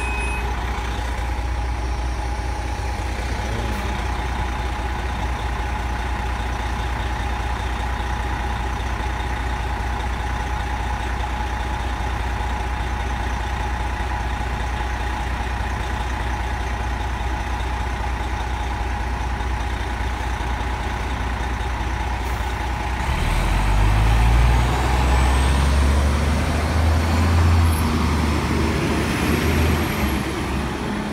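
Diesel engine of an NJ Transit coach bus idling steadily with a constant whine. About two-thirds through it pulls away: the engine rumble grows louder and a rising whine climbs as the bus accelerates.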